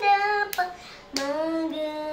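A young girl singing solo in raga Sankarabharanam, holding steady sung notes. She breaks off briefly about half a second in, then settles on a long, lower held note.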